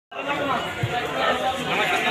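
Overlapping chatter of several people talking at once, a steady hubbub of voices, with a single low thump just under a second in.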